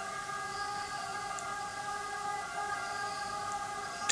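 A steady hum of several held tones, unchanging, over quiet room tone.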